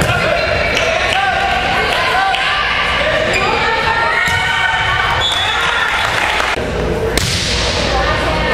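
A volleyball rally in an echoing gym: the ball is struck several times, about once a second, with the loudest hit near the end, over players' and spectators' calls and chatter.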